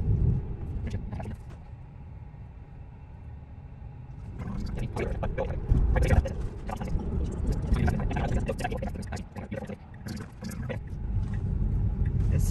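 Tyre and road noise inside a moving Tesla electric car's cabin, a steady low rumble with no engine note, dropping quieter for a couple of seconds early on and growing louder again from about four seconds in.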